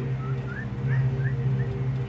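A steady low hum, with five short rising chirps, about three a second, above it.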